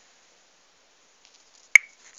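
Near silence, broken near the end by a few faint ticks and then one sharp, very short click.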